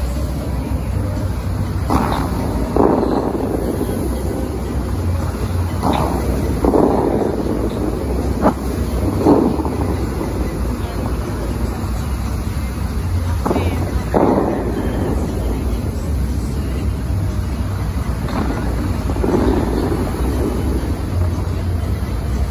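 Bellagio fountain water jets firing: rushing bursts of spray, often two close together, every four seconds or so, with one sharp crack about eight seconds in. Under them is a steady low rumble of wind on the microphone.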